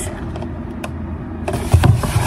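Cardboard product box handled close to the microphone, with a low rumble of handling, a single click about halfway, and a thump as it is set down on the desk near the end.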